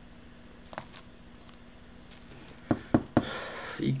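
Gloved hands squeezing and handling a small plastic glue-pen bottle to empty out its glue: a faint click about a second in, then three sharp plastic clicks in quick succession near the end, followed by a short rubbing hiss.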